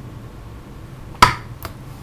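A sharp click about a second in, followed by a fainter one, from a small Torx screwdriver working the hidden lid screw of a 3.5-inch hard drive.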